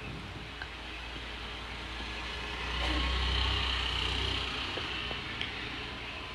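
Low rumble of a passing motor vehicle, swelling a few seconds in and then fading away.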